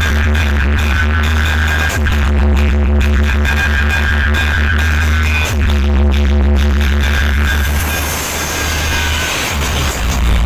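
Loud electronic dance music from a large outdoor DJ sound system, dominated by a heavy sustained bass. The bass breaks briefly about two seconds in and again midway, then drops out for a couple of seconds near the end.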